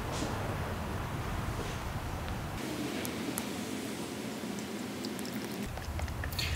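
Motor oil being poured from a plastic jug into a car engine's oil filler neck, a quiet steady pour with a few small clicks.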